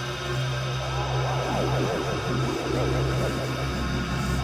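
Electronic music from a DJ mix: a sustained droning chord over a steady deep bass, joined from about a second in by a flurry of quick, overlapping up-and-down pitch swoops.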